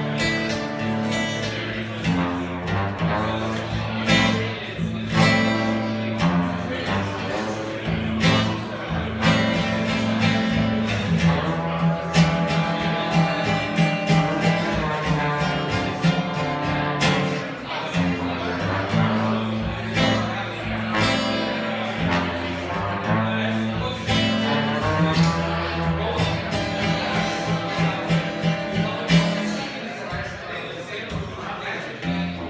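Live blues played by an acoustic guitar and a trombone: the guitar strums a steady rhythm while the trombone plays long, sliding melody notes over it.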